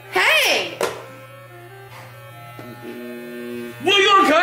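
Electric hair clippers buzzing steadily in a low hum while cutting hair. A short loud vocal cry comes near the start, over quiet background music.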